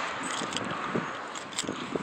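A steady hiss with a few soft knocks, picked up by a handheld phone while walking.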